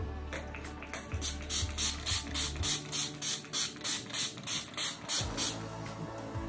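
Makeup setting spray in a fine-mist pump bottle, pumped rapidly about four times a second for some five seconds, each pump a short hissing spritz.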